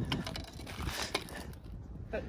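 Faint clicks and light scraping from magnet-fishing gear being handled: the rope, the magnet and the rusty iron bar it has just pulled up, moving on the pavement.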